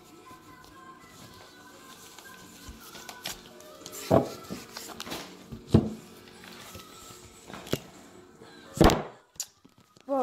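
Soft background music with steady held tones, broken by a few sharp knocks, the loudest about four, six and nine seconds in, as a deck of oracle cards is shuffled and handled on the table close to the microphone.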